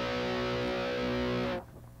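Electric guitar B5 power chord on the third, fourth and fifth strings ringing out steadily, then muted abruptly about one and a half seconds in.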